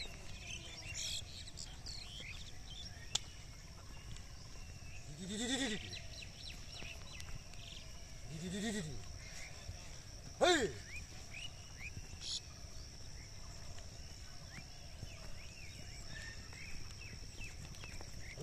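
Three drawn-out calls a few seconds apart, each rising and then falling in pitch, over a steady high insect buzz and scattered bird chirps in the open field.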